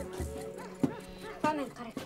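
A run of short, high yelping cries, each rising and falling in pitch, about five of them, with a couple of sharp knocks between.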